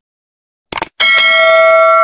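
Subscribe-button sound effect: after a moment of silence, a quick mouse click, then about a second in a bright bell chime of several steady tones that rings on.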